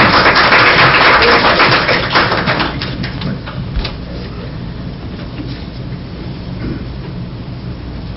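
A small audience applauding briefly, fading out about three seconds in, followed by quieter room noise with a few scattered knocks and shuffles.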